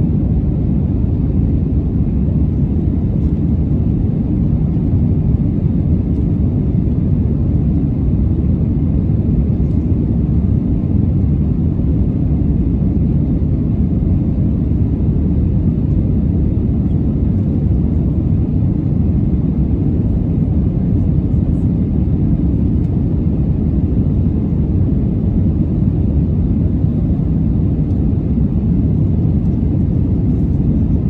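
Airbus A321 cabin noise at a window seat in climb: a steady, low rumble of the engines and airflow that stays even throughout.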